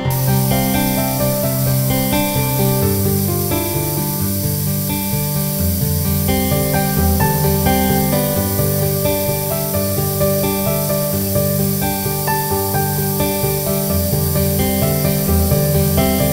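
Background acoustic guitar music, with the steady hiss of a band saw blade cutting a knife handle block running under it. The hiss begins and ends abruptly with the shot.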